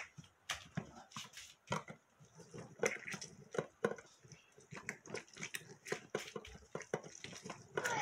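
Orange halves being pressed and twisted on a stainless steel hand juicer: irregular wet squelching and scraping, many short separate sounds.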